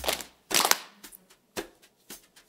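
Hands clapping or patting a steady beat, about two sharp strokes a second, keeping time for a rhythm game.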